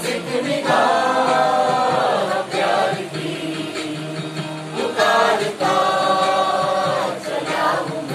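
A mixed chorus of men and women singing a Hindi film song together, with loud held phrases about a second in and again about five seconds in.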